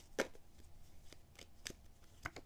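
Tarot deck being shuffled by hand: faint card shuffling with a few sharp clicks of the cards, the loudest shortly after the start and two more in the second half.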